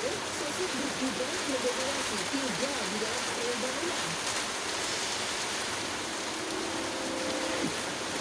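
Programme audio of a television broadcast played back in a room: a muffled, wavering voice for the first few seconds, then a held low tone about six seconds in, all over a steady hiss.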